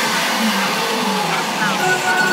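Frenchcore (hardcore electronic) music in a breakdown: the pounding kick drum has dropped out. Over the synths plays a sampled sound that glides up and down in pitch, and near the end a rising sweep settles into a steady high synth note.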